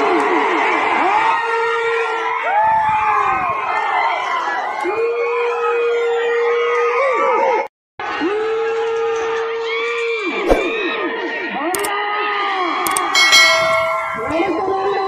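A huge crowd shouting and cheering, many voices overlapping, with long drawn-out yells rising over the din. The sound cuts out for a moment about halfway through.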